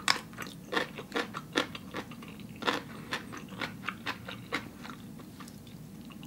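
Close-up crunchy chewing of a crisp slice of pickled radish: a run of sharp crunches about two a second, fading out after about four and a half seconds.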